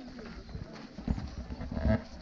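Footsteps on a dirt path and thumps from a hand-held camera jostled while walking, the loudest thump near the end, with faint chatter from other walkers.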